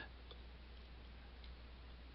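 Near silence: room tone with a steady low hum, faint hiss and a couple of very faint ticks.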